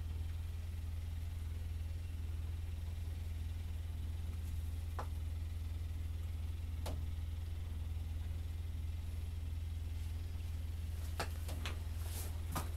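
Steady low hum, with a few faint isolated clicks as a small ice-fishing rod and spinning reel are handled over the hole.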